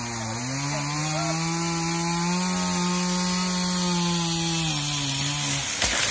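Chainsaw cutting through an ash trunk, its engine rising in pitch about half a second in and held steady under load, then dropping as the cut finishes. Near the end comes a loud crash as the felled ash tree hits the ground.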